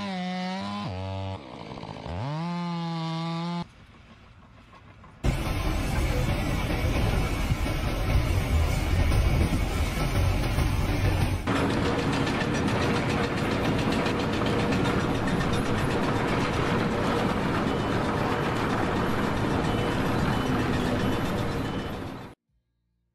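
Petrol chainsaw running, its pitch rising and falling as it is revved, then holding steady for about a second before it stops about four seconds in. After a short lull, a loud steady rushing noise of unclear source fills the rest.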